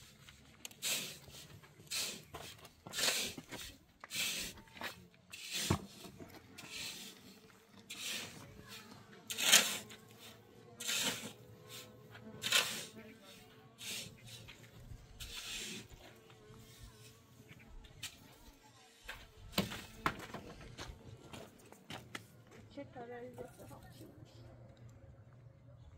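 Water splashing in short repeated strokes, about one a second, as something is washed by hand in hose water.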